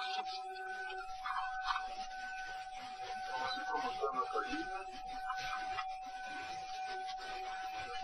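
DC-9 cockpit voice recorder audio: a steady electrical tone with a broken higher tone above it, over a low rumble that comes in about a second in, with scattered clicks and faint muffled cockpit sounds. It is the flight deck at the start of the takeoff.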